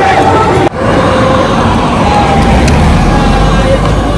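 A car passing close by on an asphalt road, a steady mix of engine and tyre noise that comes in abruptly under a second in.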